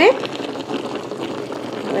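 Water boiling in a stovetop tamale steamer pot (vaporera), a steady hiss of steam.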